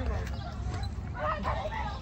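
Faint, brief voices of young children at play, over a steady low rumble of wind on the microphone.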